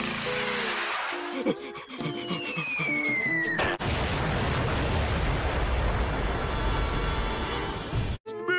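Cartoon bomb-drop whistle falling steadily in pitch for about three and a half seconds over a few music notes, then a sudden explosion and a long, low rumble.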